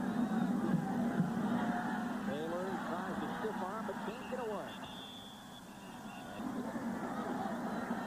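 Stadium crowd noise through a football play: a steady roar with voices rising and falling in it, easing off a little past the middle and building again near the end.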